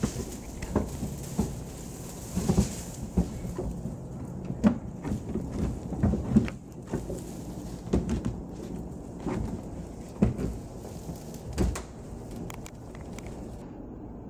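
Irregular knocks, bumps and rattles of a prop tiki hut's roof and poles being handled and fitted together as the roof is set onto its support poles.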